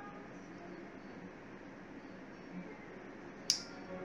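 Faint room noise, then one sharp, short glassy clink about three and a half seconds in: a whiskey tasting glass set down on a table.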